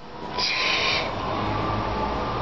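Graphite pencil scratching on sketchbook paper, one short stroke about half a second in, over a steady low hum.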